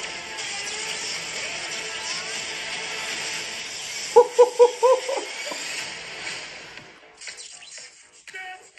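Film trailer music and sound design: a busy, noisy score, then four quick pitched notes a little after four seconds in, before the sound dies away near the end.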